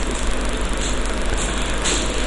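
Steady background noise with a low hum underneath it; no distinct event.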